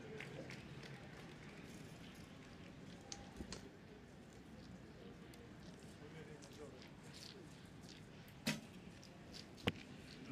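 Recurve bow shot: a sharp snap of the string on release about eight and a half seconds in, then the arrow striking the target a little over a second later, over quiet outdoor ambience.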